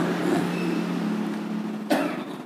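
A steady low hum that slowly fades, with a short click near the end.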